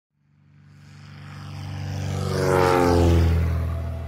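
Propeller airplane flying past: the engine and propeller drone grows from nothing, peaks about three seconds in, and drops in pitch as it passes.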